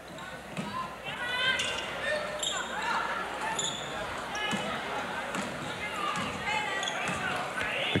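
Gym sound of a basketball game on a hardwood court: a ball dribbling, sneakers squeaking in many short chirps, and a crowd talking in the background of a large hall.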